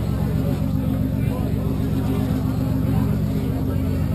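Steady low drone of an engine running at a constant speed, with a fast, even pulse and no change in pitch.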